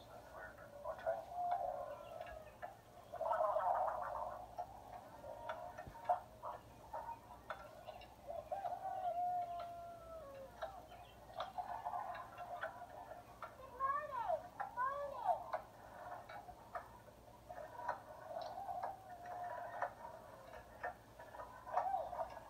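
Indistinct voices and clicks played back through a tablet's small speaker. The sound is thin, with no bass and no treble, and a few gliding vocal sounds come about two-thirds of the way in.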